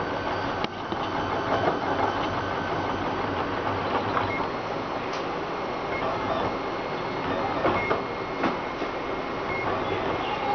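RapidBot 2.0 3D printer running a print: its motors whir steadily as the hot end moves over the bed. Brief high-pitched tones come and go a few times, and there are occasional sharp clicks.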